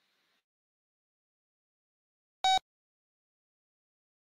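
Silence, broken once about two and a half seconds in by a single short, pitched beep, like an electronic tone.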